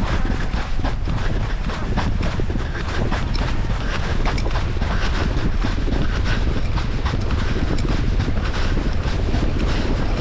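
Heavy wind rumble on the microphone as it moves fast over open sand, with scattered knocks and clicks through it.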